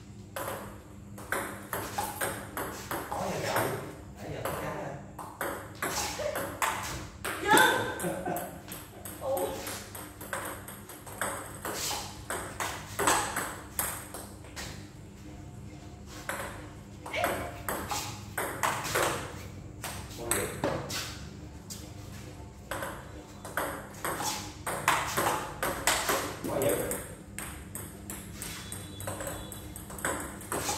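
Table tennis balls being struck with paddles and bouncing on the table, a quick irregular run of sharp clicks during multi-ball practice of backspin serves.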